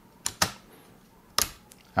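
Three small clicks, two close together near the start and one about a second and a half in: the side retaining clasps of the Acer Aspire 5 A515-43's DDR4 SODIMM slot being pulled apart, releasing the RAM stick so that it springs up.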